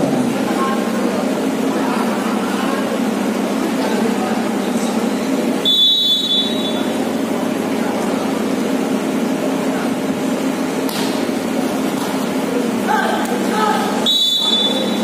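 Steady murmur of spectators' and players' voices. About six seconds in comes a short shrill blast of a referee's whistle, and another just at the end.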